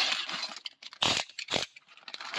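A plastic bag packed with plastic toy accessories being handled, giving two short crinkling rustles about a second in and half a second apart.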